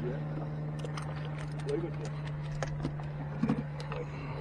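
A small motor hums steadily at one low pitch, with scattered light clicks and faint voices.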